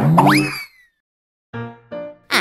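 Cartoon comedy sound effect: a springy boing with sweeping rising pitch that fades out within the first second, followed about a second and a half in by a short held musical note.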